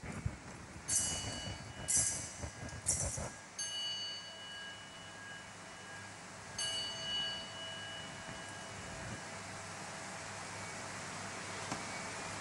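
Altar bell rung at the elevation of the host after the consecration: three ringing strikes about a second apart, then a fourth strike a few seconds later, each tone ringing on as it fades.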